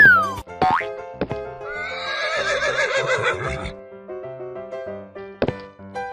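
A horse whinny sound effect lasting about two seconds, starting about two seconds in, over children's cartoon background music with a steady beat. Two short sliding-pitch cartoon effects come in the first second.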